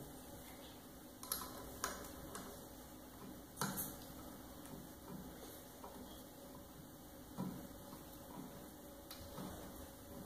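A few faint, irregular metallic clicks and clinks as a Holset variable-geometry turbo's electronic actuator is handled and fastened back onto the turbocharger by hand.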